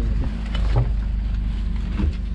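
Motor vehicle engine running with a steady low rumble, heard from on board an open-sided shuttle vehicle.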